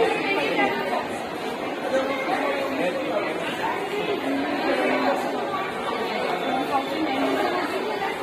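Indistinct chatter of many people's voices overlapping in a large indoor hall, with no words standing out.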